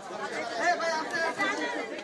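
Indistinct chatter of several people talking at once, a low jumble of overlapping voices.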